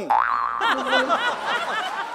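A cartoon-style boing sound effect: a quick rising glide, then a rapid wobbling run of springy pitch bends that lasts most of the two seconds.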